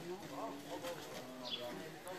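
A man's voice addressing a gathered group from some distance, faint and indistinct, with a bird's short falling chirp about one and a half seconds in.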